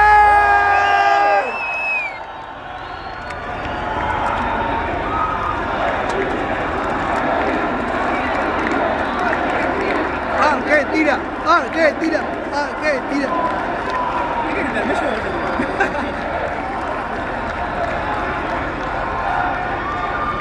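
Large open-air festival crowd cheering and shouting between songs at a metal concert, many voices overlapping. It opens with one long held shout that lasts about a second and a half. The cheering swells louder about ten seconds in.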